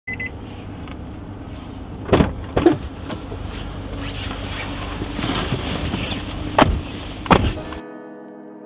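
Steady low hum inside a car cabin with four loud knocks and clunks, two about two seconds in and two near the end, as people move about at the doors and seats. Music with plucked and piano-like notes takes over just before the end.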